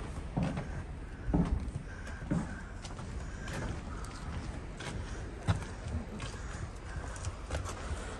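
Footsteps on a concrete walkway, irregular knocks about once a second, over a steady low rumble.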